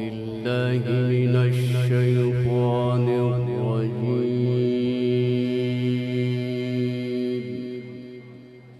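A male qari chanting Quran recitation in the melodic tajweed style: one long phrase, ornamented with quick pitch turns in its first few seconds, then held on a steady note. It dies away with an echoing tail near the end.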